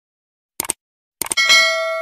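A few mouse-click sound effects, then a bright bell ding that rings for about half a second and cuts off: the usual subscribe-button animation sound.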